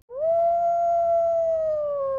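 A wolf howling: one long call that rises quickly at the start, holds steady, then slowly falls.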